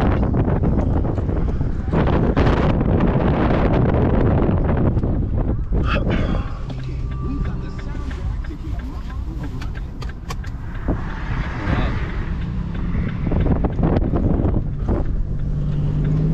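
Cabin noise inside a moving Chevrolet car: engine and road noise. A loud rushing noise fills the first six seconds, then it settles to a quieter, steady low hum.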